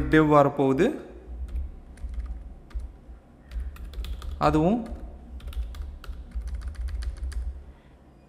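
Typing on a computer keyboard: irregular key clicks, with a quick run of keystrokes about six to seven seconds in.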